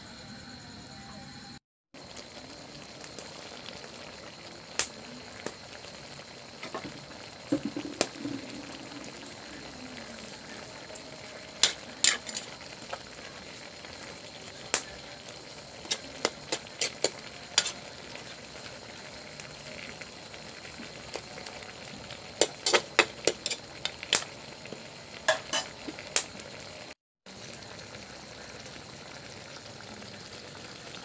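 Coconut-milk catfish stew simmering in a wok over a wood fire, a steady hiss and bubble, with a metal utensil clinking and scraping against the pan in scattered clusters as greens are stirred in.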